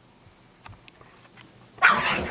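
Pug on the move, a few faint clicks as it sets off, then a sudden loud bark near the end.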